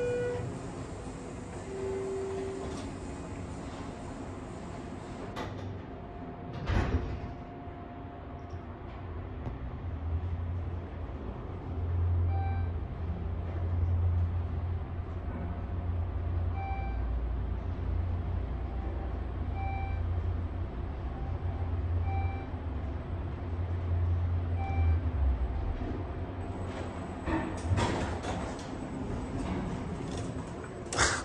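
Schindler 400A machine-room-less traction elevator riding up: a short button beep, then the single-slide door closing with a knock about seven seconds in. A steady low hum follows as the car travels, with a short beep from the car speaker every two to three seconds as floors pass. Near the end the door slides open.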